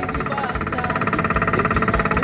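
Small fishing boat's motor running steadily while underway, a fast even rhythm that does not change.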